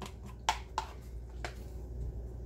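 A few light knocks and clicks of a plastic colander and a spatula against a metal skillet, the loudest about half a second in, as drained riced cauliflower is tipped into the pan and stirred.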